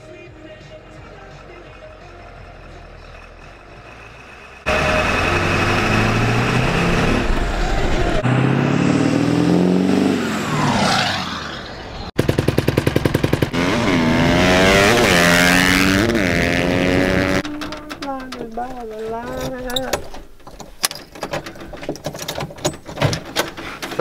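Pickup truck engine, loud from about five seconds in, revving up in steps as it accelerates through the gears, with a second run of rising and falling revs a few seconds later. A voice talks near the end.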